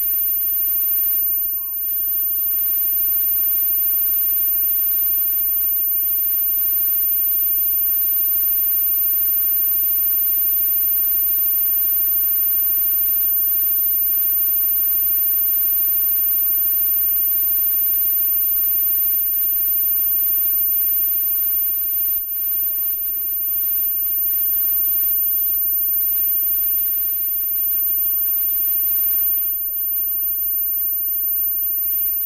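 A band playing live and loud without vocals: keyboard and electric guitars over a drum kit, at a steady level.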